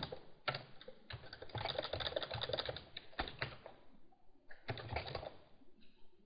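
Typing on a computer keyboard: a quick run of keystrokes, a short pause, then a few more keystrokes about five seconds in.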